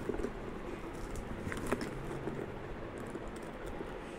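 Light clicks and rustles of a hard-shelled bicycle frame bag being handled and turned over, with a couple of sharper ticks partway through.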